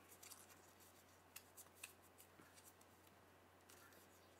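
Near silence: a few faint ticks and rustles of a small folded paper slip being handled and opened, over a steady low electrical hum.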